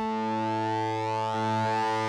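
Software instrument built from sampled KORG MS-20 oscillators holding one low note steadily, its tone growing brighter and buzzier as the frequency modulation amount is turned up.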